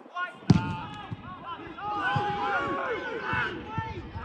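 A football kicked with a single sharp thump about half a second in, followed by several players shouting and calling over one another.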